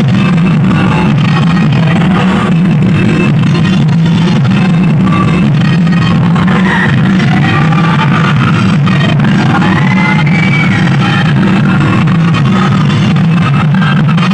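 Loud Assamese remix dance song played over a stage sound system, with a strong steady bass and a sung melody through the middle stretch.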